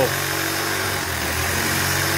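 A motor running with a steady low hum, even in level throughout.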